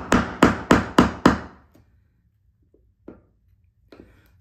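Claw hammer striking a wood chisel that pares the wooden door jamb, deepening a hinge mortise. About five quick strikes come roughly three a second, then stop about a second and a half in, with one faint knock near the end.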